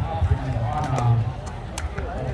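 Voices of players and spectators talking and calling out around the game, with a few sharp knocks, the strongest near the end.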